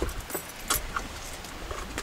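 Car seatbelts being unbuckled: a handful of sharp metallic clicks and jingles from the buckles and latch plates, the loudest a little after half a second in.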